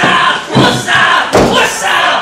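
Spectators shouting and yelling at a wrestling match, with a thud from the ring about one and a half seconds in.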